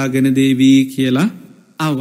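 A Buddhist monk's voice intoning a sermon in a chanting style. He holds one long, steady note for about a second, then begins the next phrase near the end.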